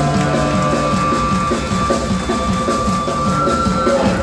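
Live band playing an instrumental passage: electric guitar over upright bass and a drum kit, with held notes on top of a fast, steady beat.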